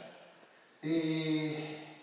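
A man's voice holding one sound at a steady pitch for under a second, beginning just under a second in: a drawn-out hesitation filler between phrases of a lecture, heard through a microphone.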